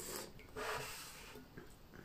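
A faint slurping sip of tea from a ceramic spoon, followed about half a second later by a longer breathy hiss as she draws air over the tea to taste it.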